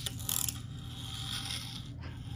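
A small wind-up toy car's clockwork spring motor whirring steadily as it unwinds and drives the car across a lab tabletop. It opens with a sharp click as the car is set down.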